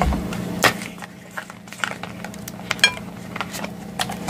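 Cap of a plastic squeeze bottle of salad dressing being worked open by hand: a few separate sharp clicks, the loudest under a second in, and a short squeak near the end, over a low steady hum.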